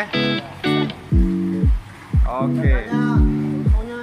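Background music with a steady beat of deep drum hits under repeated pitched notes.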